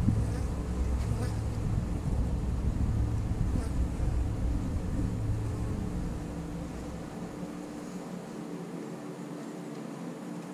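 Honey bees buzzing around an open hive box, a steady hum. A low rumble underneath fades out about seven seconds in.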